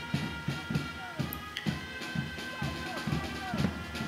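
Street band of drums and brass playing: a quick, steady drumbeat with held brass notes over it.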